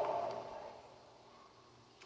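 A man's voice trailing off on a drawn-out, held sound that fades away within the first second, then near silence.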